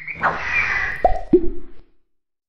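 Cartoon sound effects of an animated logo intro: a swish, then two quick pops about a third of a second apart, the second lower in pitch, each with a short ringing tail. The sound cuts off suddenly near the end.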